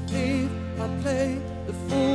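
A live pop-rock band playing a song: electric guitar over bass and drums. Held melody notes waver with vibrato twice.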